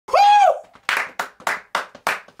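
A man's short high "ooh", then hands clapping in a steady rhythm, four claps about three to a second.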